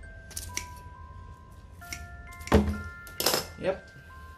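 Pruning shears and hands working through a ZZ plant's roots and stems: a few light clicks, then a loud crunching snip about two and a half seconds in followed by rustling, over soft background music of chiming mallet tones.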